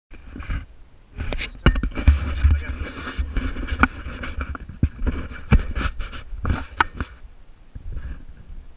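Wind buffeting an action camera's microphone in an uneven low rumble, with irregular knocks and clicks about once a second from the camera being handled and footsteps on sandstone.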